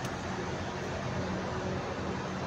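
Steady low hum of city background noise, mostly distant traffic, with no distinct events.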